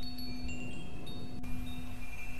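Wind chimes ringing, scattered high clear notes that sound and fade one after another over a steady low drone.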